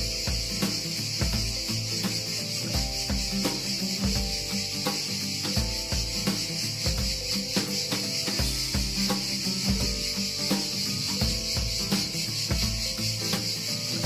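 A dense, steady, high-pitched chorus of summer insects, heard over background music with a regular bass beat.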